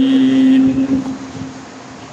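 A man's voice holding one long chanted note of an Arabic invocation, steady in pitch, fading out a little over a second in and leaving low room noise.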